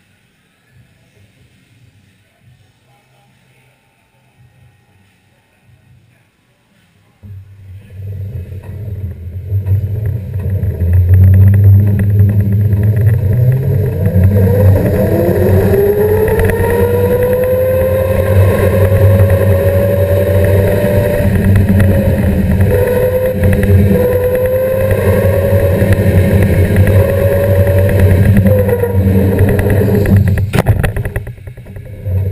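Indoor electric go-kart driving off and running at speed. After several quiet seconds, a loud low rumble starts suddenly about seven seconds in. A motor whine then rises in pitch and holds, wavering slightly as the kart goes through the corners.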